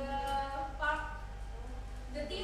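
A person's voice making a drawn-out, steady-pitched sound with no clear words, with a second short voiced sound a little under a second in, over a steady low room hum.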